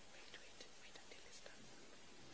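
Near silence: quiet room tone with faint whispering in short soft hisses.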